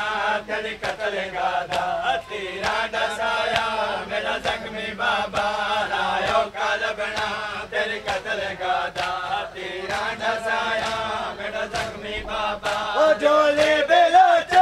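A group of men chanting a noha (mourning lament) in unison over a steady rhythm of sharp open-hand slaps: matam, ritual chest-beating.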